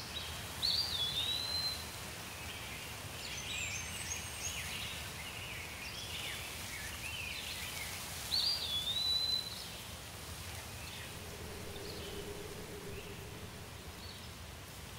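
Outdoor ambience with birds singing over a steady low background noise: one bird repeats the same short whistled phrase twice, about seven seconds apart, with scattered chirps and twitters between.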